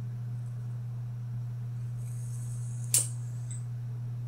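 A plastic hair clip being handled close to the microphone: a soft rustle, then one sharp click as it snaps shut about three seconds in, followed by a fainter small click. A steady low hum runs underneath.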